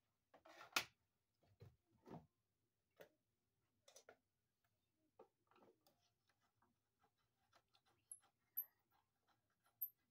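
Faint scattered clicks and ticks of a screwdriver working the screws of an electrical box cover, with a sharper click about a second in and a few brief, faint high squeaks near the end.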